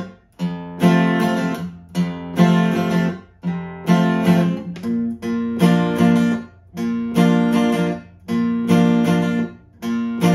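Acoustic guitar, tuned a half step down with a capo, strummed in a country pattern on E and A chord shapes: a bass note, then down-down-up strums, then a mute, repeating about once a second. The chord changes about halfway through.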